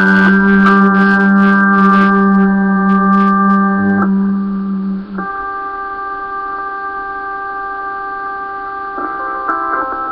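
Instrumental music: sustained organ-like keyboard chords over a held low note, with faint high ticks during the first few seconds. The low note drops out about five seconds in, and the chords change about four and five seconds in and again near the end.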